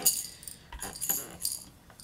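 A plush baseball baby rattle being shaken, giving about four short rattling shakes roughly half a second apart.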